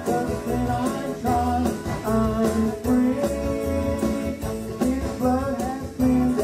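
Gospel song sung live into microphones: a man's lead voice with a woman's voice joining, over electric keyboard accompaniment with a steady beat.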